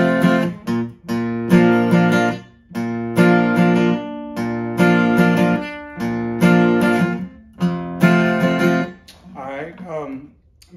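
Steel-string acoustic guitar strummed through an E-to-A verse pattern: a bass note, then down, down, up strums and a muted stop, repeating about every second and a half. The strumming stops about nine seconds in.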